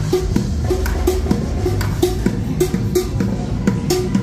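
Drumming with sticks on upturned buckets and a metal pot, a steady quick beat of sharp strikes and short pitched knocks.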